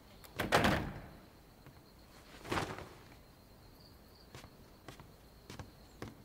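A glass-paned door or window being pushed shut, with a loud slide and knock about half a second in and a second, softer knock a couple of seconds later. A few faint clicks follow, over a faint steady high tone.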